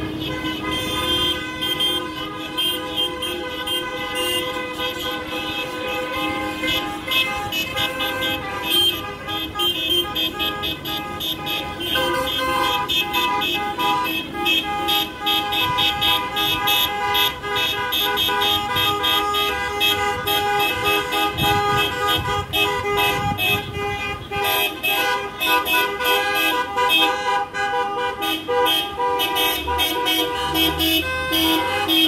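Many car horns honking in protest from a slow column of cars, short blasts and longer held tones overlapping into a continuous din, with car engines underneath.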